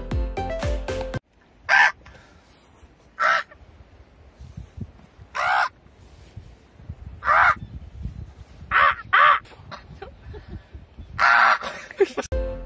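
Background music that cuts off about a second in, then a crow cawing: about seven short, harsh calls a second or two apart, two of them close together near the end, over a low wind rumble on the microphone.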